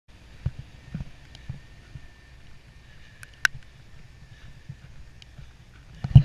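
Footsteps on snow, thumping about twice a second at first and then fainter, with one sharp click near the middle that is the loudest sound.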